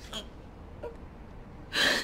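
A frightened woman's sharp, loud gasp near the end, after a couple of faint, quick breaths.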